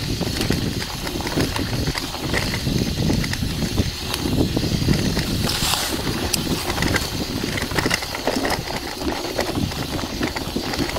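Wind buffeting an action camera's microphone during a road-bike ride, a gusty rumble with tyre and road noise and scattered rattling clicks. A brief brighter hiss comes about halfway through.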